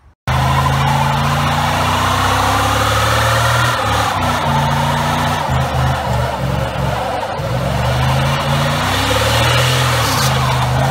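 Second-gen Dodge Dakota's 4.7 V8 revving hard during a burnout, its rear tyre screeching as it spins. It starts suddenly, and the engine note rises and dips again and again.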